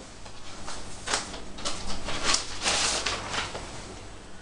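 A vinyl record being handled and put onto the turntable: a series of short rustling scrapes, the loudest a little past the middle.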